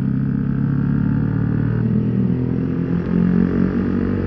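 Yamaha sport motorcycle's engine running steadily while the bike rides along at low speed in traffic.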